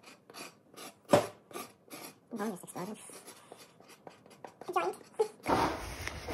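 A knife blade scraping the dark residue off the bottom of a solidified block of rendered deer tallow, in quick repeated rasping strokes, about three or four a second.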